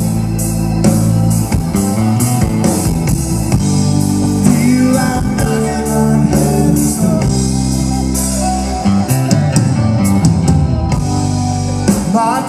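Live rock band playing, with electric guitar and drum kit; regular drum and cymbal hits run through it, and bending guitar notes come about halfway through.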